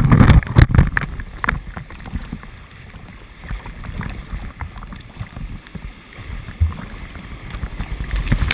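River wave water splashing and rushing over a handboard and its mounted camera, with a burst of loud slaps and splashes in the first second or so, then a quieter, uneven wash with scattered small knocks.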